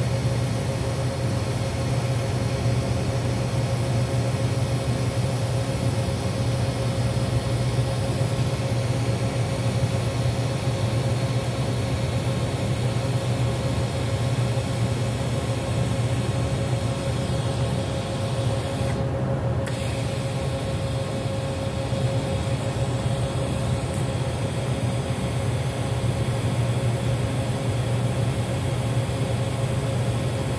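TIG welding a front lower control arm joint: the arc and welder give a steady low buzz with an even hiss over it, unbroken throughout. The high hiss dips briefly about two-thirds of the way through.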